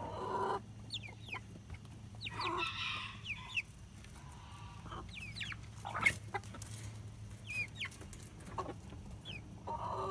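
Flock of chickens clucking, with short high calls that fall in pitch scattered throughout and a louder squawk at the start and again about three seconds in. A single sharp knock about six seconds in is the loudest sound.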